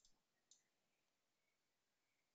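Near silence with a few faint computer mouse clicks at the start and one more about half a second in.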